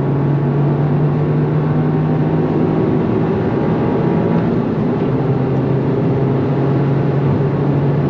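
Toyota GR Yaris's turbocharged 1.6-litre three-cylinder, with a Milltek exhaust, accelerating hard at high speed, heard inside the cabin. A steady engine drone over road and wind noise, still not super loud.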